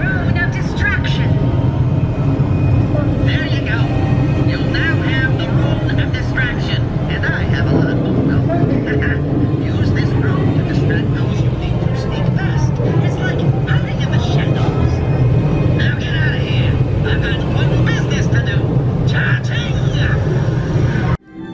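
A steady low rumble with indistinct voices chattering over it, starting and cutting off abruptly.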